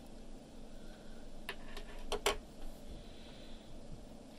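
Quiet room tone with a few light clicks and taps from about a second and a half in, as hands handle the laptop to power it on.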